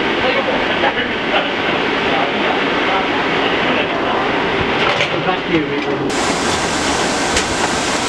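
Steady, dense background noise with a low rumble and scattered voices over it; a man says a few words near the end.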